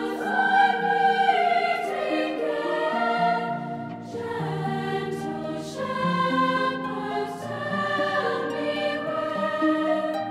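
Girls' choir singing a slow choral song in several parts, with harp accompaniment.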